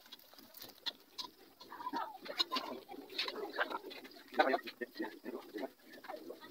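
Low, indistinct voices talking in short snatches, over small scattered clicks and rustles from pieces of goat skin being mixed by hand in a stainless steel bowl.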